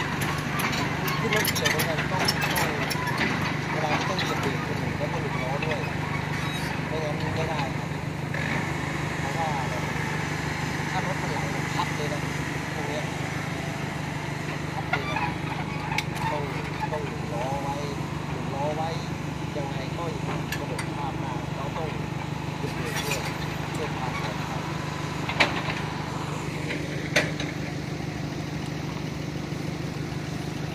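A heavy diesel engine running steadily at a low even hum, with two sharp knocks near the end.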